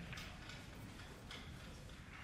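Soft, faint footsteps on carpet, about three in two seconds.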